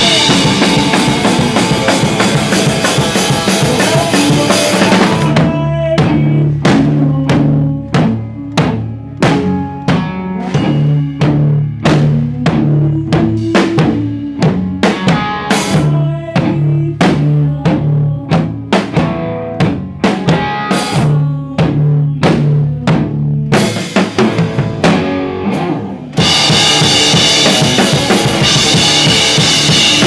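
Live rock band playing electric guitar and drum kit. It opens with the full band playing, drops about five seconds in to a stop-start passage of separate drum hits and guitar notes, and crashes back in at full volume near the end.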